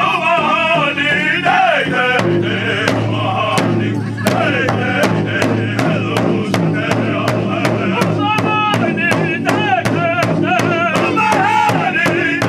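Powwow drum group of five men singing together while striking one large hide-covered powwow drum in unison with long drumsticks. The drumbeat becomes quicker and steadier about four seconds in.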